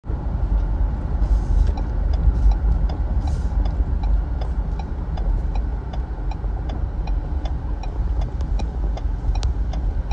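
Wind buffeting the microphone in a loud, uneven low rumble, with a short high chirp repeating about three times a second over it.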